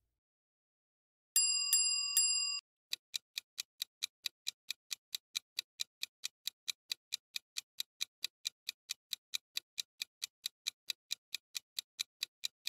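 Quiz countdown sound effect: three quick bell-like chimes, then a clock ticking evenly at about four or five ticks a second as the answer timer runs down.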